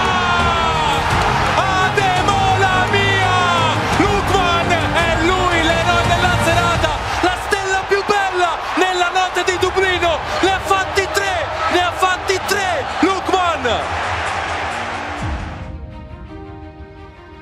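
Italian TV commentator shouting a goal call, long falling cries at first, then rapid excited shouting, over background music. The sound fades out near the end.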